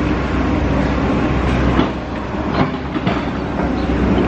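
Stroller wheels rolling over rough asphalt: a steady low rumble with a few sharp clacks and rattles from the frame.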